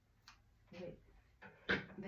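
A single short snip of scissors cutting a beading thread about a third of a second in, then a woman's voice starting to speak.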